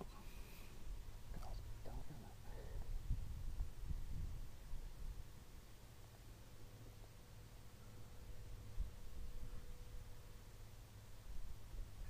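Faint room tone from a voiceover microphone: a low rumble with a few soft faint noises in the first three seconds.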